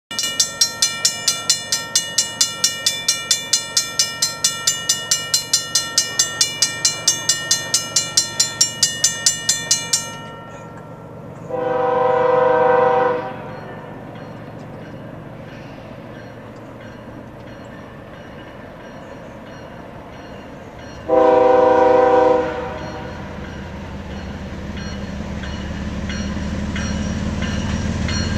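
A railroad crossing bell rings at about three strokes a second and stops about ten seconds in. An approaching BNSF intermodal train then sounds its locomotive horn in two blasts of a second or two each, spaced about ten seconds apart. The locomotives' engine rumble grows steadily louder toward the end as the train nears.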